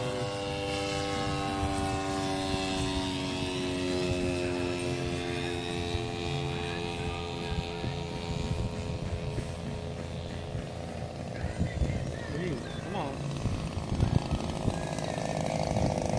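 Radio-controlled model airplane engine and propeller at full throttle on the takeoff run, a steady buzzing drone whose pitch falls slowly as the plane moves away down the runway.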